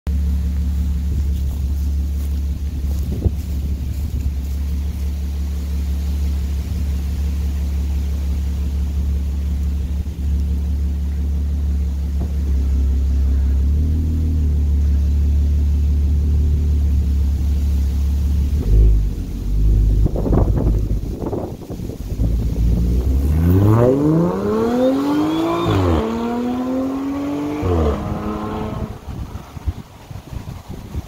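Audi S4's supercharged 3.0-litre V6, fitted with a smaller EPL supercharger pulley, stage 2 tune and AWE Touring exhaust, idling steadily, with a couple of brief revs about twenty seconds in. It then pulls away under acceleration: the pitch rises, drops at an upshift, rises again to a second upshift, and the sound fades as the car moves off.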